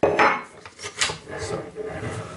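Aluminium gas tube of an ICS ICAR GR airsoft rifle being slid out of its mount, metal scraping and rubbing against metal, with a sharp click about a second in.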